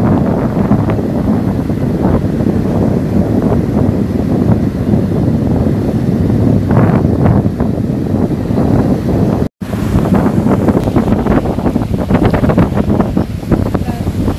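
Strong wind buffeting the phone's microphone over surf washing onto the beach, a loud, even rumble. The sound cuts out completely for a moment about nine and a half seconds in.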